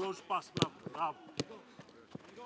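A football being kicked on grass: two sharp thuds of a boot striking the ball, about a second in and again under a second later, with short shouted calls between them.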